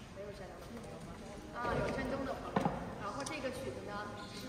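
Indistinct voices of people talking quietly, with a single sharp knock about two and a half seconds in.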